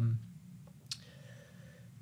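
A man's speech trails off into a pause of quiet room tone, broken by a single short click about a second in.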